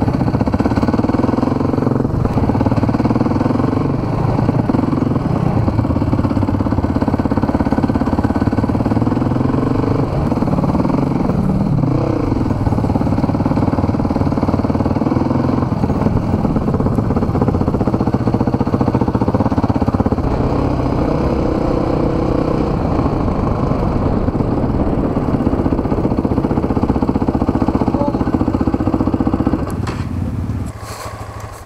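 Enduro dirt bike engine running close to the microphone as the bike is ridden slowly over an overgrown track, a steady note whose pitch falls and rises again around ten to twelve seconds in.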